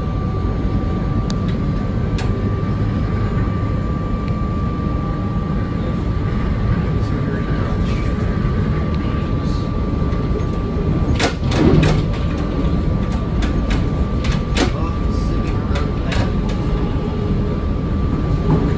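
SEPTA electric commuter train running at speed, heard from the cab: a steady rumble of the wheels on the rails with a steady whine over it. A run of sharp clicks and knocks from the wheels comes about eleven to fifteen seconds in.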